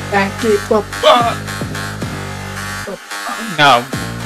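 Electronic hip-hop beat with a buzzing, dubstep-style synth bass, with short stretches of voice over it about a second in and again near the end.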